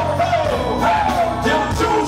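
Live band playing hip hop/R&B with a vocalist singing a sliding melodic line into a microphone over it, amplified through a concert PA.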